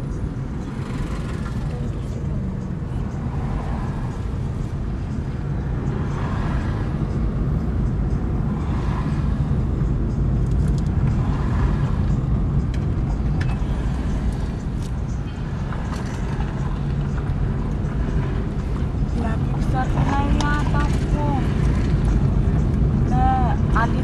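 Steady low rumble of a car's engine and tyres heard from inside the cabin while creeping along in slow traffic.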